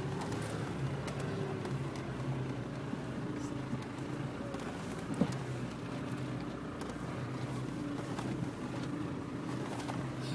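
Four-wheel-drive vehicle's engine running steadily at low revs as it crawls over a rutted dirt track, with a single knock about five seconds in.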